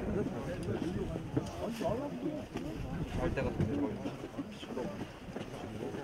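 Indistinct chatter of several men talking at a distance from the microphone, with wind rumbling on the microphone.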